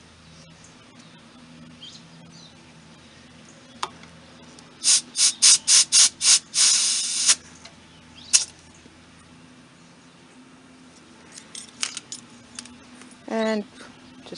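Compressed air hissing at a dually truck's tyre valve through an air chuck, in six quick spurts and then a longer one, with one more short spurt a second later, as the tyre is topped up to 60 psi.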